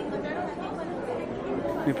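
Indistinct murmur of many overlapping voices, with no single voice standing out.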